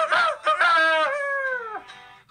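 A rooster crowing once: a few short rising notes, then one long drawn-out note that falls in pitch and trails off near the end.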